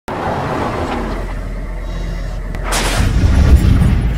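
Logo-intro sound effects: a rumbling noise bed, a whoosh about two and a half seconds in, and a deep boom that swells to its loudest near the end.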